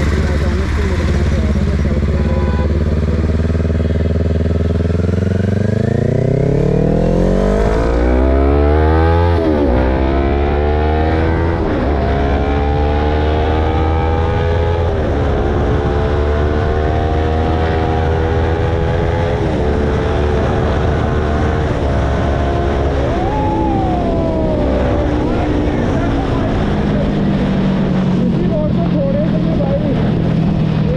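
Kawasaki Ninja sport bike engine pulling away and accelerating up through the gears. Its pitch climbs, then drops at each of several upshifts, with a brief rev about three quarters of the way through before the engine settles to a lower, slower note near the end.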